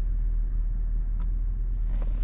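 Steady low rumble of a Nissan Patrol's 5.6-litre V8 petrol SUV on the move, heard from inside the cabin: engine and road noise together, with a faint click just over a second in.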